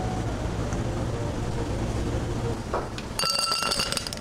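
Ice cubes poured from a scoop into a tall drinking glass near the end, clattering and clinking, with the glass ringing. Before that, a steady low background rumble.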